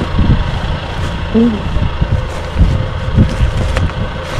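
Hands rummaging through the contents of a dumpster, handling a pillow, a jacket and loose newspapers and flyers, with a few short knocks from the handling. A steady low rumble runs underneath.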